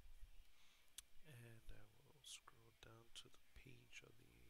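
Faint, quiet speech, muttered too low for words to be made out, with a single sharp click about a second in.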